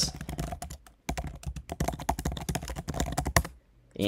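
Typing on a computer keyboard: a fast run of keystrokes with a brief pause about a second in, stopping shortly before the end.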